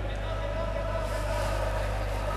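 Steady low hum and murmur of an indoor sports hall between rallies, with a faint held tone over it and no ball strikes.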